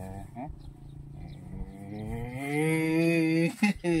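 A cow mooing: a low, drawn-out hum that swells into a loud call lasting over a second before breaking off near the end, with a second call starting just as it ends.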